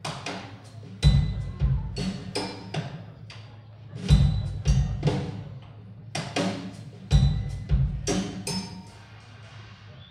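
A live band opening a song with sparse percussion: a heavy low drum stroke about every three seconds, each followed by a few lighter knocks and short ringing pitched notes.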